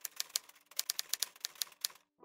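Typewriter keys striking in a quick, uneven run of sharp clacks, several a second, used as a typing sound effect for on-screen lettering. The clacks stop near the end.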